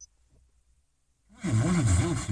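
A brief high beep as the touch screen is tapped, then about a second later a car head unit's FM radio comes on loudly, playing a broadcast with a voice.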